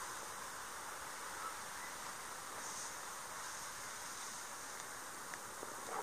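Faint steady outdoor background hiss in a grassy field, with a few light ticks and rustles.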